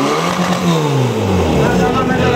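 Portable fire pump's engine coming off full throttle once the run is finished: its pitch rises briefly and then falls steadily as the revs drop, settling into a lower, rougher running sound.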